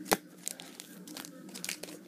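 Baseball trading cards being handled and swapped in front of the camera: crinkling and rustling, with one sharp click just after the start and several smaller clicks after it.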